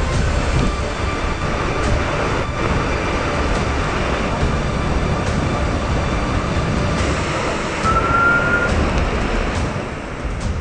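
Typhoon wind and driving rain, a loud steady rush with a deep rumble underneath. A brief high whistle rises slightly about eight seconds in.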